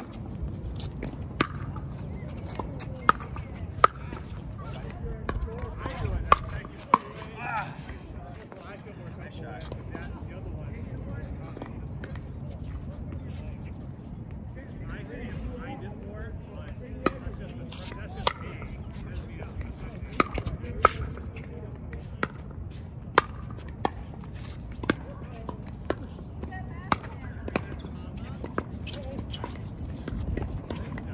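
Pickleball rally: sharp pops of paddles striking the plastic ball, a few in the first seven seconds, then about one a second through the second half as the players trade shots.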